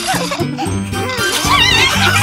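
Light cartoon background music with a bouncy bass line. About a second and a half in, a high, warbling, squeaky cartoon voice comes in over it.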